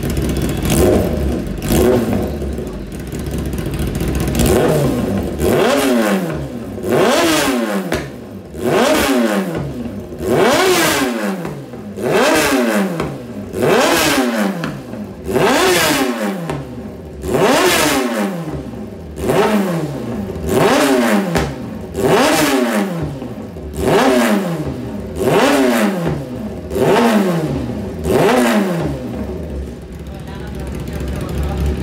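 Kawasaki ZX-10R inline-four engine breathing through an SC Project CRT slip-on silencer, running at idle and then, from about five seconds in, blipped over and over on the throttle: each rev climbs sharply and falls back, about three every four seconds.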